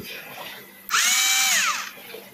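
Einhell 3.6 V cordless screwdriver, running on a new lithium-ion battery in place of its nickel-cadmium pack, run briefly with no load. About a second in, its motor whine rises quickly as it spins up, holds for just under a second, then falls away as it spins down.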